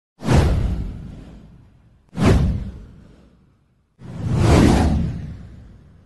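Three whoosh sound effects from a channel intro, about two seconds apart. The first two hit sharply and fade away; the third swells in more gradually before fading.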